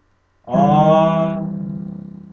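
A man singing one long held note. It starts about half a second in, sags slightly in pitch and fades away.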